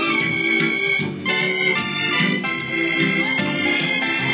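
Organ music: held chords that change every second or so.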